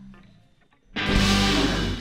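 After a near-silent pause, a band comes in suddenly and loudly about a second in with a full rock chord, guitar to the fore, ringing on.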